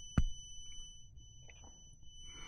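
Two clicks from a motorcycle's left handlebar switch button: a sharp one just after the start and a fainter one about a second and a half later, as the button is held down and let go. A faint steady high-pitched whine runs underneath, breaking off briefly near the middle.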